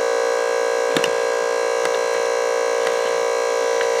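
Small electric fuel pump running with a steady whine as it pumps fuel into the model jet's tanks, with a light click about a second in.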